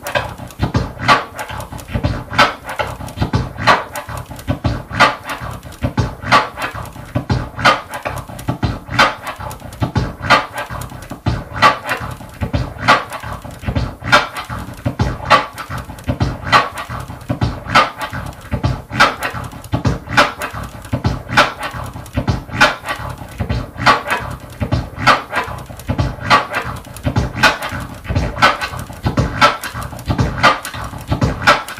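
Vinyl record scratched on a turntable, repeating a hybrid scratch that uses a kick-and-snare drum sample: one tear paused halfway through the forward stroke (two sounds), then three triplet-timed crossfader clicks on the backward stroke (four sounds), six drum hits per cycle in a steady loop.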